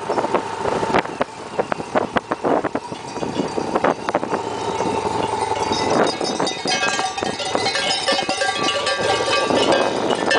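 Sheep bells on a passing flock, first a few scattered clanks, then from about six seconds in many bells ringing and jangling together as the sheep crowd past.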